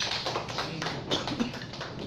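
Scattered hand-clapping from a small audience, many quick uneven claps greeting a panelist as he is introduced.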